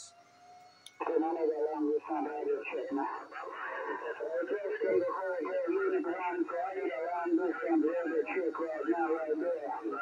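Single-sideband voice heard through the Xiegu G90 HF transceiver's speaker: a distant station talking, thin and cut off above the voice range, starting just after a brief click about a second in as the set switches from transmit to receive.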